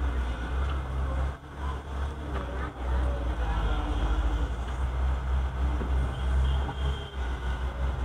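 A vehicle engine idling: a steady low rumble that runs without a break.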